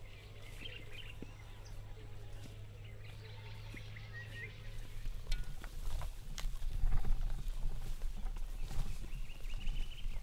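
Rural outdoor ambience: faint bird chirps over a low steady hum. From about halfway there is louder rustling with dull thumps and clicks, and a brief high steady buzz near the end.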